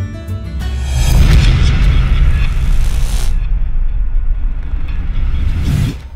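Cinematic logo sound effect: a rising whoosh about a second in swells into a deep boom and rumble. The hiss drops away about three seconds in while the low rumble carries on, and a short final whoosh comes just before it cuts off.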